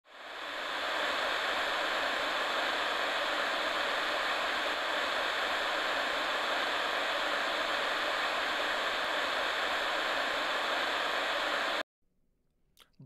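Steady hiss of static-like white noise that fades in over about the first second and cuts off suddenly just before the end.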